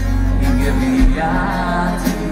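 Live performance of a slow song on acoustic guitar with band backing, deep low notes held underneath and changing about a second in.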